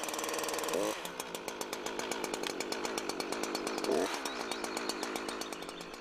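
Husqvarna two-stroke petrol chainsaw just started and running with its chain brake on. Its revs fall to idle about a second in, rise briefly just before the middle, then settle back to a steady idle.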